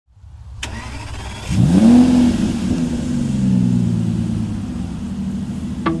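A car engine starting: a sharp click, then the engine catches about a second and a half in, its revs rising quickly before settling into a steady idle.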